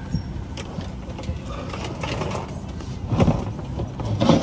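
Steady low hum inside an airliner cabin during boarding, with scattered knocks and clatter and a louder burst of noise about three seconds in.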